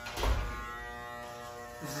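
Corded electric hair clippers running with a steady buzz, with a short burst of noise just after the start.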